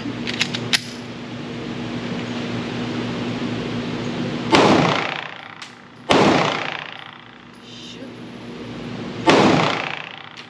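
Three shots from a Smith & Wesson M&P Shield Plus pistol in .30 Super Carry, about four and a half, six and nine seconds in, each ringing out in the echo of an indoor range. Before the shots there are a few light clicks of the pistol being handled over a steady fan hum.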